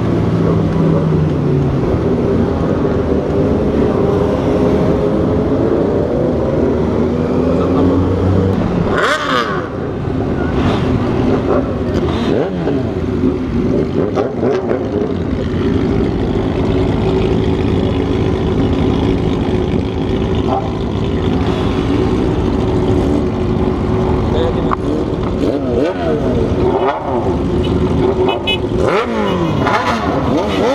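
Motorcycle engines. At first one bike runs steadily at cruising speed; about nine seconds in it slows into a dense pack of motorcycles, and several engines idle and rev up and down around it.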